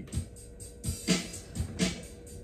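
A drum beat opening a band jam: a few sharp snare-like hits over low kick thumps, with a faint steady tone underneath.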